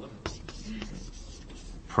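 Writing by hand on a board: a run of short, irregular strokes as an expression is written out.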